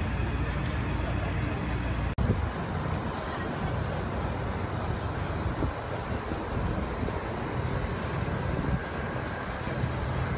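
Steady low rumble of distant engines under outdoor background noise, broken by a momentary dropout about two seconds in.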